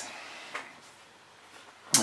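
Quiet room tone in a pause between words, with one faint short click about half a second in.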